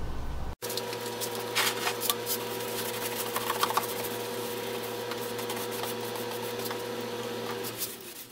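A steady machine hum with several fixed tones sets in after a sudden cut about half a second in and runs until just before the end. Over it come scattered scrapes and taps of a paintbrush working paint onto a wooden panel door.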